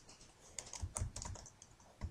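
Computer keyboard keys clicking in a quick run of presses as a short name is typed, starting about half a second in. The clicks are faint.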